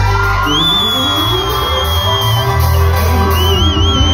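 Live band music with keyboards and a strong bass line, and a high held lead note that slides up about half a second in and wavers near the end.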